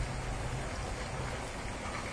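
Ricotta and zucchini balls deep-frying in a pan of hot oil, the oil sizzling with a steady hiss.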